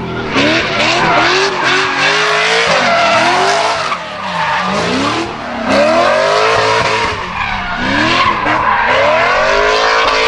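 Lexus IS300 drift car sliding sideways, its engine revving up and down over and over as the throttle is worked, with tyres skidding and squealing through the drift.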